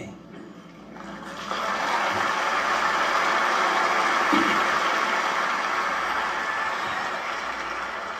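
Large theatre audience applauding. It swells in about a second in, holds steady and eases slightly near the end.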